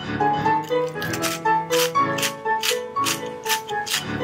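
Light background music with held keyboard notes, over which a pepper mill is turned, giving a run of short, dry crackles as peppercorns are ground.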